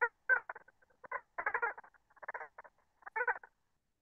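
A bird calling: short pitched calls in quick, irregular clusters.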